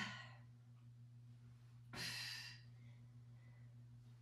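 A woman breathing hard during a floor exercise: the tail of a falling, voiced sigh at the very start, then one breathy exhale about two seconds in, with near silence between.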